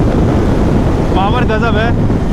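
Heavy wind noise on the microphone of a motorcycle rider slowing from about 100 km/h, a dense low rumble. A voice cuts through it briefly about a second in.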